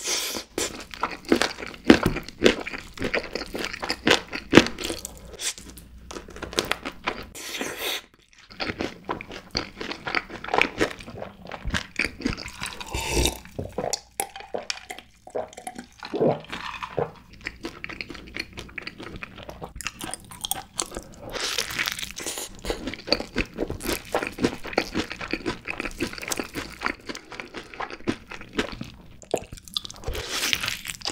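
Close-up crunching and chewing of crispy, sauce-glazed Korean fried chicken drumsticks, the coating cracking with each bite. Near the middle the crunching thins out while he drinks, then dense crunching picks up again.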